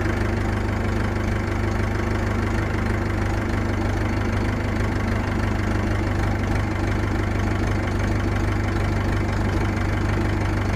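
Massey Ferguson 261 tractor's diesel engine running steadily at constant speed while driving a bush hog rotary cutter through tall grass.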